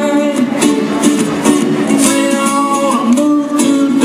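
Several acoustic guitars, steel- and nylon-string, playing live music together, strummed and picked chords with a moving melody line.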